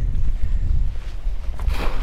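Strong wind rumbling on the microphone; near the end, a splash as a wire crab trap hits the water.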